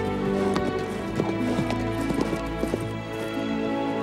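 Sustained film score with horses' hooves clip-clopping, a scattering of hoof knocks over the first three seconds as the riders' horses move.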